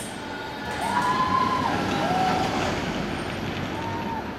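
Steel roller coaster train running along its track, heard from beside the ride. The sound swells about a second in, and three short rising-then-falling tones come through at about one, two and four seconds in.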